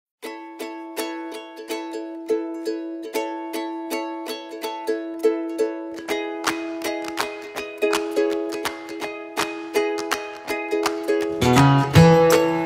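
Background music: an instrumental tune of plucked strings, notes coming about three a second. It grows fuller about halfway through, and a bass comes in near the end.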